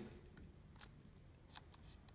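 Faint clicks of a smart thermostatic radiator valve head's metal coupling nut meeting the plastic valve adapter as it is fitted onto the radiator valve, a few light ticks mostly in the second half over near silence.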